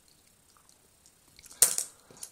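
Near silence, then about a second and a half in one sharp clack followed by a couple of quicker clicks: a small toy car set down on a wooden table.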